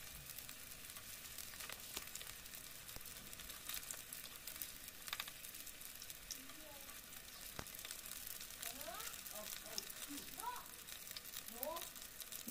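Momos shallow-frying in hot oil in a non-stick pan: a steady, quiet sizzle with fine crackles. Now and then metal tongs click against the pan as the dumplings are turned.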